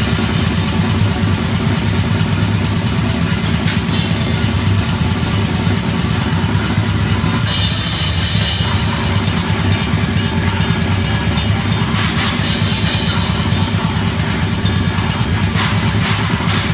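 Drum kit played at high speed in live grindcore: rapid blast-beat strokes with bass drum and cymbals over the rest of the band. The cymbals grow brighter and denser about halfway through.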